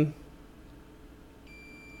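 Digital multimeter in diode mode giving a steady high-pitched beep, starting about one and a half seconds in, as the probe lands on a ground pin: the beep signals a near-zero reading to ground.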